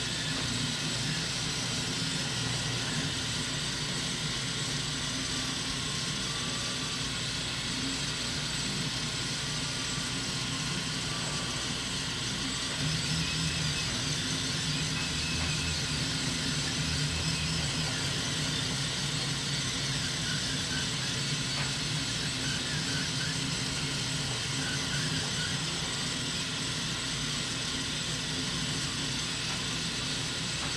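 Mini Kossel Pro delta 3D printer printing: its stepper motors and belt-driven carriages whir in shifting tones as the effector moves over the print, over a steady hiss. It gets slightly louder a little before halfway through.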